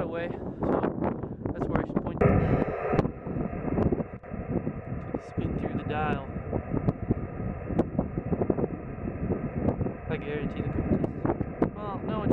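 Receiver hiss from a Yaesu FT-897 transceiver's speaker in USB mode as it is tuned across the empty 2 m band, with faint steady whistles under the hiss. A short warbling tone passes about six seconds in and again near the end.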